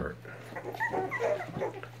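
Young Airedale Terrier puppies whimpering in a few short, high squeaks as they root against their mother to nurse.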